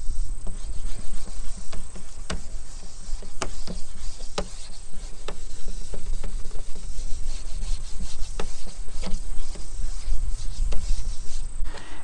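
A hand-held sanding pad is scrubbed back and forth against a wet, oxidized plastic headlight lens in wet sanding, in short rubbing strokes about once a second. A steady low rumble runs underneath.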